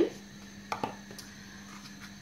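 Light clicks of a plastic tub as chopped onion is tipped from it into a pot, two or three short ticks about a second in, over a faint steady hum.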